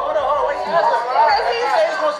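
Overlapping speech: several people talking over each other at once.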